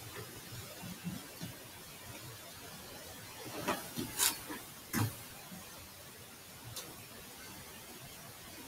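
Quiet handling sounds of a Raspberry Pi touchscreen unit being pressed by hand onto a wall on sticky-footed standoffs: a few soft bumps, then a cluster of about four short sharp clicks and taps about four to five seconds in, and one faint click later.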